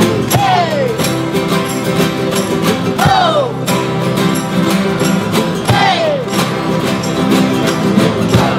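A large group of acoustic and electric guitars strumming a steady rhythm together. Three times, a shouted 'Ho!' falls in pitch over the guitars, about every two and a half seconds.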